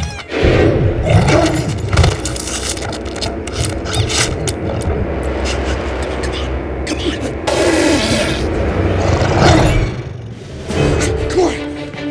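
Film soundtrack: tense orchestral score under chase sound effects, with a run of sharp knocks and clatters in the first half and wordless voices (yells or gasps) but no dialogue.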